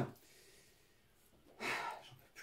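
A man's short sigh, one breathy exhale of about half a second near the end, after a near-quiet stretch.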